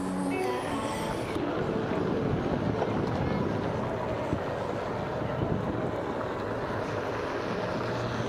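Steady rushing noise from riding a Onewheel XR along pavement, with wind on the camera microphone and the board's tyre rolling. Music with clear notes plays for about the first second and a half, then stops.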